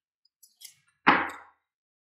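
A single short swish of a tarot card handled against the deck in the hand, sharp at the start and fading within about half a second, about a second in, after a few faint light ticks.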